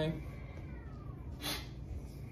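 A woman's drawn-out word trails off at the start. Then there is low room noise with one short breathy hiss about one and a half seconds in.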